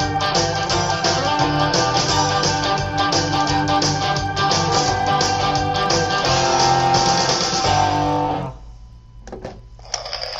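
Southern rock instrumental cue with the full band playing together, guitar prominent over bass, drums and keys. It stops abruptly about eight and a half seconds in.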